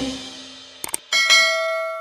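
Subscribe-button sound effect: two quick mouse clicks about a second in, then a bright bell ding that rings on and fades away.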